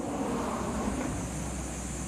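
Steady outdoor background noise: a low hum under an even hiss, with no call from the duck.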